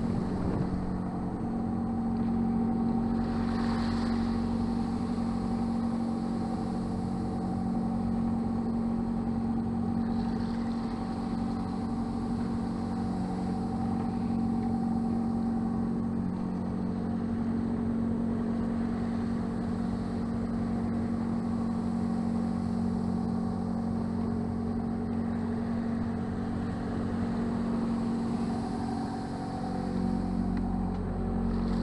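A sailing yacht's auxiliary engine running steadily at constant speed, a low even drone, with faint wind and water noise.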